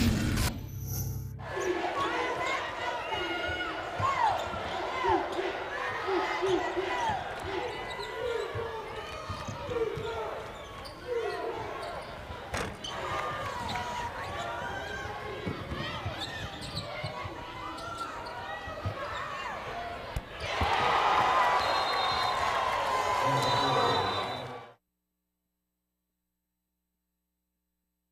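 Basketball game sound on a hardwood court with no commentary: sneakers squeaking, the ball being dribbled, and crowd murmur in the arena. About 20 seconds in the crowd noise swells louder for a few seconds, then the sound cuts off abruptly into silence.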